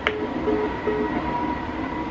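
A click, then three short, evenly spaced beeps from a phone as the call is hung up, over a steady background hiss.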